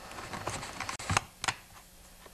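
Pliers clicking against a wire throttle linkage rod and the saw's plastic as the rod is worked loose and lifted off the throttle lever: a handful of light, sharp clicks, the two clearest a little after a second in.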